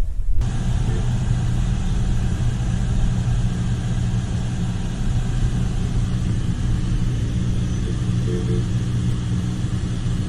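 Car engine and road noise heard from inside the cabin while driving slowly in traffic: a steady low drone that begins suddenly just under half a second in.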